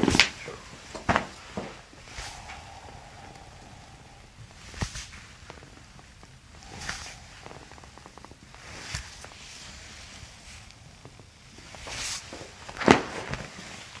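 Spinal joints cracking under a chiropractor's hand thrusts to the back of a person lying face down: a few sharp, short cracks spread out over the stretch, the loudest near the end, with soft breathy sounds in between.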